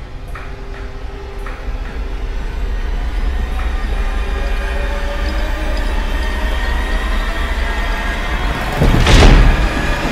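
Horror-film sound design: a low rumbling drone with a few held tones above it swells steadily louder. About nine seconds in, a loud whooshing hit lands.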